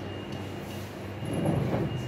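Steady low room hum with a faint high whine, swelling into a brief low rumble about a second and a half in.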